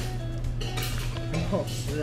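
Metal cutlery clinking against plates and bowls while crab is eaten at the table, a few short clinks over light background music.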